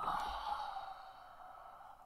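A man's long, breathy sigh of exasperation that fades away over about two seconds.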